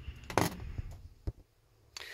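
A few light clicks and knocks from a mechanical refrigerator thermostat and its capillary tube being handled and set down, the sharpest about half a second in, then two smaller ones.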